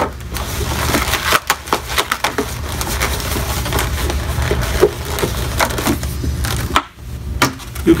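Inflated latex balloons being twisted and tied by hand, rubbing together in an irregular run of squeaky creaks and crackles.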